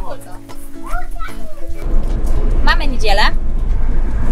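Light background music with a child's voice, then, about two seconds in, the cab of a moving camper van: a steady low engine and road rumble with a voice over it.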